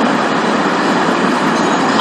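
Steady, fairly loud hiss-like background noise with no voice in it, even throughout.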